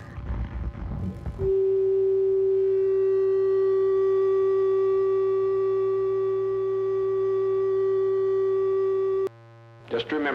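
A loud, steady electronic tone: one held pitch with overtones over a low hum. It cuts in sharply just after a brief burst of dense, noisy music, and cuts off suddenly near the end.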